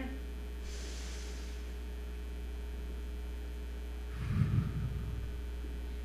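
A deep breath taken close to a handheld microphone: a hissing inhale through the nose just under a second in, held, then an exhale about four seconds in that blows on the mic with a low rumble. A steady electrical hum runs underneath.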